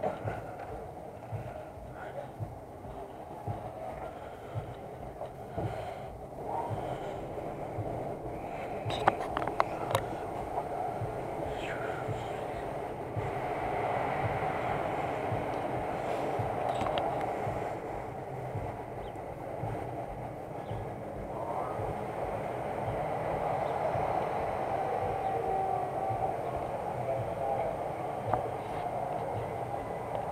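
Amusement ride car in motion: a steady mechanical rumble and whir, with a few sharp rattles about nine to ten seconds in, growing a little louder partway through.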